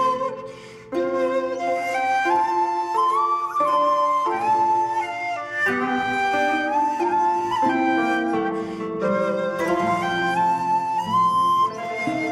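Instrumental background music with a flute melody stepping from note to note over an accompaniment, with a brief lull just under a second in.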